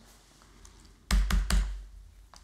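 Three quick key presses on a MacBook laptop keyboard, starting about a second in, each a sharp click with a dull thump: the Enter key tapped three times at the R console.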